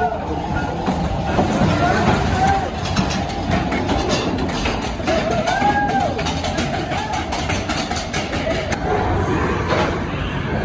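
Matterhorn Bobsleds coaster car rumbling and clattering along its track through the mountain's tunnels, with people's voices calling out over it.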